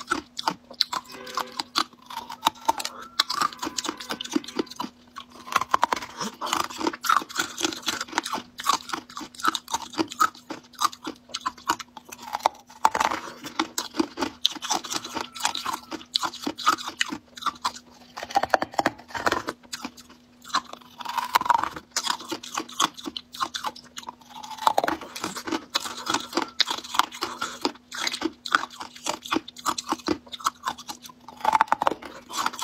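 Close-miked biting, crunching and chewing of colored ice, with sharp irregular crackles and crunches throughout.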